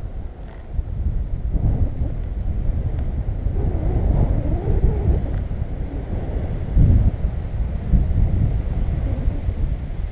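Airflow buffeting the camera microphone in flight under a tandem paraglider: a loud, gusty rumble that surges a few times, strongest about seven seconds in.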